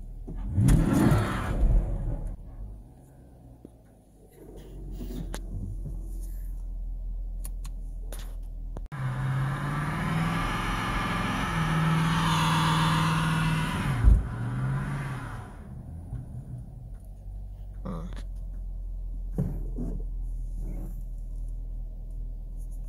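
2019 Camaro SS's 6.2-litre V8, heard from inside the cabin, revved against the line lock: a short rising blip about a second in, then a long hard run at high revs for about six seconds from about nine seconds in, ending with a sharp knock.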